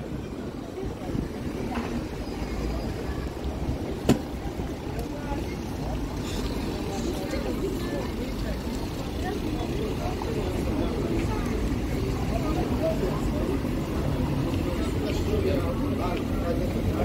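Busy city street ambience: steady traffic rumble under the chatter of passers-by, with one sharp click about four seconds in.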